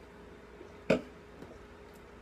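Quiet room tone with a faint steady hum, broken once about a second in by a single short spoken word.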